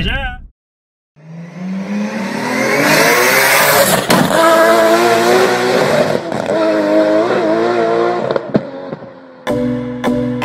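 Intro sound effect of a car engine revving hard: it climbs in pitch over the first couple of seconds, then holds high with some wavering, with a sharp crack about four seconds in. It fades out near the end as music begins.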